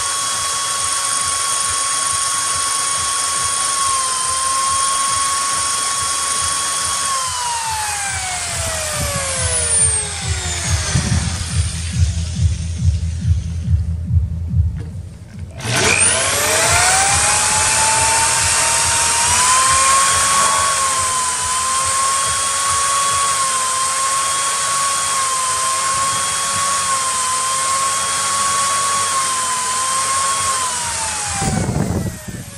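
Power drill with a 1/4-inch glass bit boring through 6 mm glass: a steady high motor whine that winds down and stops about a third of the way through. A few seconds of low thumps follow, then the drill starts again on the next hole, rising quickly to speed and running steadily with slight wavers in speed.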